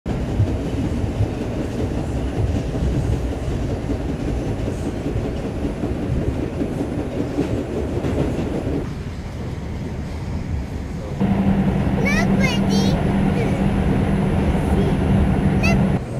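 New York subway train running, heard from inside a crowded car: a steady rumble of wheels on track that dips slightly, then turns louder about eleven seconds in with a steady hum and a few short high squeals as the train pulls into a station.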